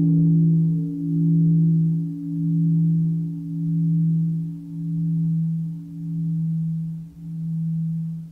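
A large Buddhist temple bell ringing out after a strike: one low hum slowly dying away, pulsing about once a second, while its higher tones fade within the first few seconds.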